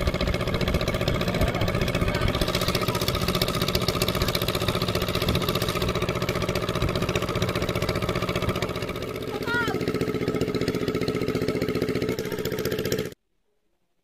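Small engine-driven water pump running steadily while it pumps water out of a fishing pond. It cuts off suddenly near the end.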